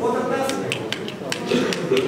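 Indistinct voices of people talking, with a few light clicks or taps among them.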